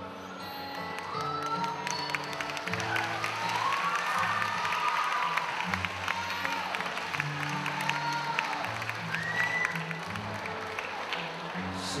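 Live acoustic-guitar and cajón accompaniment playing an instrumental passage between sung lines, with the audience clapping and cheering over it.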